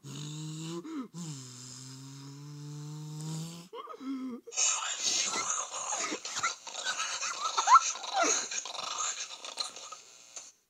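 Cartoon soundtrack: a steady low pitched drone for about the first four seconds, then Donald Duck's raspy, quacking voice, loud and unintelligible, for most of the rest.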